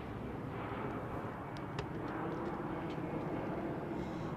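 Steady outdoor background rumble of vehicle noise, with a faint low drone that rises slowly in pitch and a few faint clicks a little before halfway.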